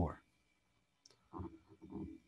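The end of a spoken phrase, then near quiet broken by a single faint click about a second in and a few soft, faint sounds near the end.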